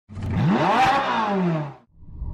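A single engine rev: the pitch climbs quickly, then slides back down over about a second before cutting off.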